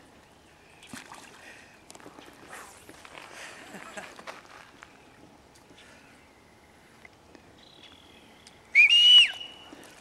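Faint splashing and lapping of river water around a swimming man, then a short loud whistle about nine seconds in that rises and then falls in pitch.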